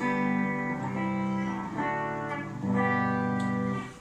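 Electric guitar played with a clean tone: four chords struck in turn, each left to ring for about a second before the next, with the last one fading out near the end.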